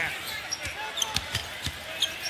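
A basketball dribbled on a hardwood court, a few separate bounces, over the steady murmur of an arena crowd.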